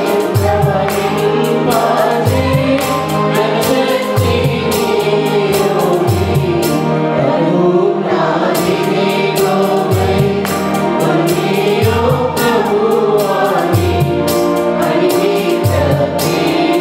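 Mixed choir of women's and men's voices singing a Telugu Christian worship song through microphones. An electronic keyboard accompanies them, with bass notes changing about every two seconds under a steady beat.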